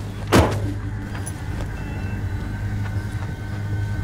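A car door shut with a single loud thump about a third of a second in, over the steady low hum of the car's engine running.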